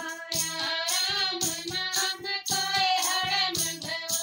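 Women's voices singing a Haryanvi devotional bhajan together. Blue hand clappers jingle and a hand drum is struck in a steady beat behind them.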